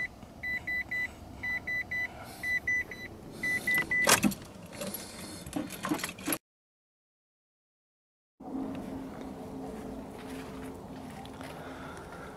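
Mitsubishi L200's in-cab warning chime beeping in quick triples about once a second, stopping about four seconds in with a sharp knock. After a short break in the sound, a steady low hum runs.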